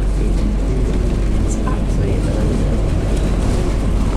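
Steady low rumble inside a moving bus: engine and road noise carried through the cabin.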